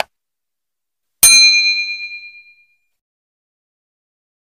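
A single bell ding sound effect for the notification-bell button of a subscribe animation: struck once about a second in, ringing out in several clear tones with a wavering fade over about a second and a half.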